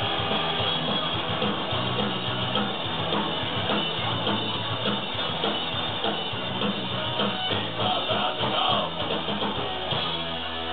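Punk rock band playing live: distorted electric guitars, bass guitar and a driving drum kit in an instrumental passage without vocals.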